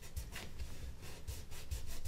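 Fingertips rubbing masking tape down onto a sheet of vinyl, a faint, soft scuffing.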